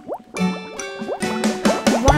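Cartoon bubble sound effects, a quick run of short rising bloops, over children's song music that dips briefly at the start.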